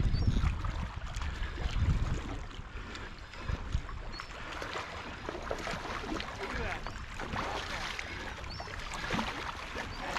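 Wind gusting on the microphone, with small waves lapping and splashing against shoreline rocks. The wind gusts are heaviest in the first couple of seconds.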